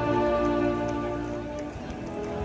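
Live orchestra holding sustained chords, several long steady notes layered together, easing slightly in loudness towards the end.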